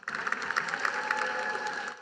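Audience applauding in a large arena, a dense patter of many claps that starts suddenly and cuts off after about two seconds.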